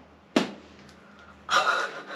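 Sticky homemade slime squeezed in the hands, giving one short wet smack about a third of a second in. A short breathy exhale follows about a second and a half in.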